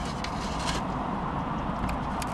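Steady low rumbling background noise inside a car cabin, with no distinct events.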